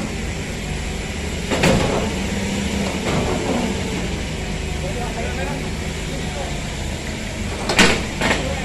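Engine idling steadily under the handling of a heavy shrink-wrapped textile machine, with a sharp knock about one and a half seconds in and another near the end as the load is moved. Faint voices in the background.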